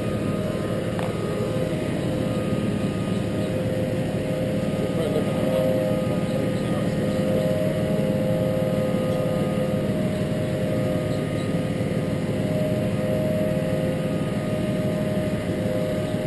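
Truck engine idling steadily, a constant hum that does not rise in pitch or level: the revs are not ramping up, and the cruise control switch meant to raise them is not responding.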